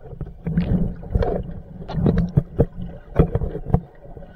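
Muffled underwater sound picked up through an action camera's waterproof housing: irregular low rumbling from water moving around the housing, with sharp knocks and clicks as the camera is swung and handled.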